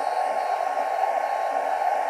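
Atezr L2 36 W diode laser engraver running an engrave job: a steady airy whir of blowing air and fans from the laser head's air assist, with a thin steady whine over it.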